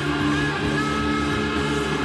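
Live rock band playing a sustained, droning passage, with electric guitar and keyboards holding steady notes.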